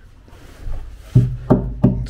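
A hand knocking on a plywood compartment floor in a boat hull: three dull knocks in quick succession in the second half, the first the loudest.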